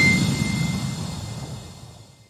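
Tail of a logo-reveal sound effect: a low whooshing noise with a steady high ringing tone, both fading away steadily over the two seconds.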